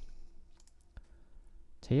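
A single sharp click about halfway through, with a couple of fainter clicks just before it, made in selecting the on-screen Next button to turn to the next question, over faint room tone.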